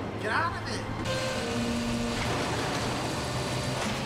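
A garbage truck's engine running steadily, with a brief shout near the start.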